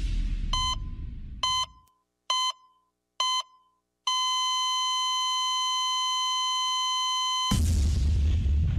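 Heart-monitor sound effect: four short beeps a little under a second apart, then one long steady flatline tone, the sign of the patient's heart stopping. Music fades out at the start and comes back loud near the end.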